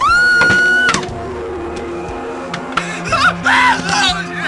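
A woman's high scream, rising sharply and then held on one pitch for about a second before cutting off, over dark background music with steady low sustained notes. Near the end come more wavering, shaky cries.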